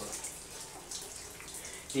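Water splashing and dripping during a bucket bath: water from a bucket and plastic cup running off a body onto a tiled floor, with the echo of a small shower stall.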